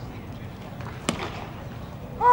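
A single sharp pop about a second in, a pitched baseball smacking into the catcher's leather mitt, over low ballpark chatter.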